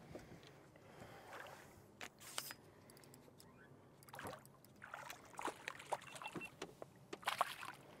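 Faint splashing of a hooked bass thrashing at the surface beside the boat, with scattered small clicks and knocks.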